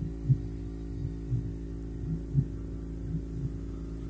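A steady low hum with soft low thumps recurring irregularly, roughly one or two a second.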